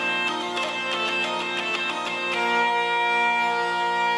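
Zanfona (hurdy-gurdy) playing: the cranked wheel bows the drone strings, which hold a steady pedal note, under a quick melody fingered on the keys. A bit past two seconds in the melody settles onto one long held note over the drone.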